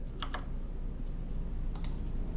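Computer mouse clicking: two quick clicks just after the start and two more near the end, over a low steady hum.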